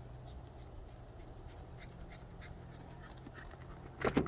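A dog panting faintly, with short soft breaths over a low steady hum.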